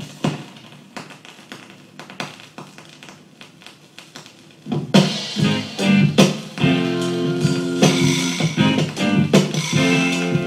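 A vinyl single of Jamaican roots reggae playing on a turntable. A quieter opening starts abruptly, and the full band, with bass, guitar and drums, comes in a little under five seconds in.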